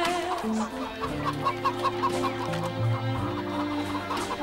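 Hens clucking, with a quick run of clucks from about a second in, over backing music.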